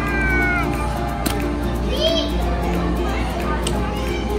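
Background music over the chatter and high-pitched calls of playing children: one call sliding down in pitch at the start, another rising and falling about two seconds in. A single sharp click sounds just after a second in.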